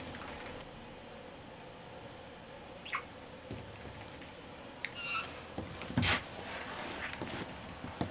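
Budgerigar rolling a small ball across a wooden floor: light ticks and knocks of the ball and the bird's feet, with two short chirps about three and five seconds in and a louder knock about six seconds in.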